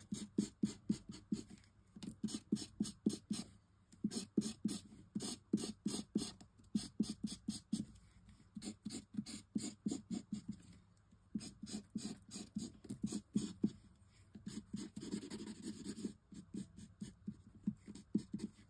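Alcohol marker nib rubbed back and forth over die-cut cardstock in quick colouring strokes, about four a second, running into a short stretch of continuous rubbing near the end.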